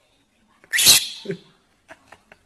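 A single loud, sharp sneeze about two-thirds of a second in, with a short weaker tail just after it.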